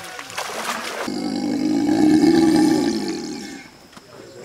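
A captured Nile crocodile growling: one deep, drawn-out growl of about two and a half seconds that starts abruptly about a second in and fades away.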